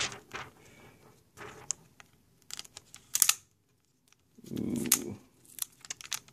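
Thin plastic protective film being peeled off a tablet, crinkling and crackling in short irregular bursts, with a brief pause past the middle and a duller, lower rub about four and a half seconds in.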